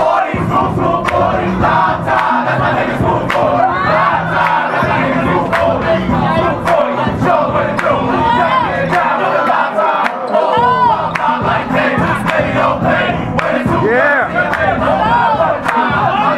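A tightly packed crowd yelling and hollering at once to hype a dancer in a battle circle, with music underneath and scattered sharp cracks.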